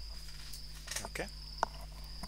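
A faint, steady high-pitched tone that runs without a break, over a low steady hum, with a man's brief spoken 'okay' about a second in.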